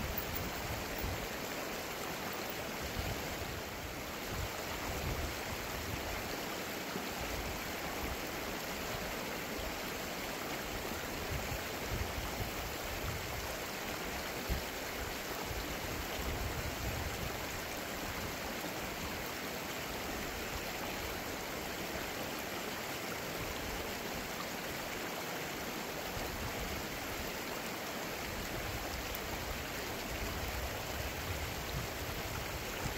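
Shallow river flowing over rocks: a steady rushing of running water.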